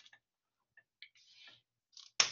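Near silence, with a few faint taps and short scratches of a dry-erase marker on a whiteboard, about a second in and again around a second and a half.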